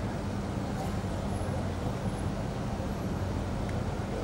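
Steady low hum with even, indistinct background noise, unchanging throughout: the ambient drone of a busy event hall, with no clear single source standing out.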